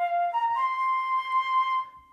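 GarageBand iOS's sampled Flute instrument played from the on-screen keyboard: three notes rising in pitch, the first two short and the last held for about a second and a half.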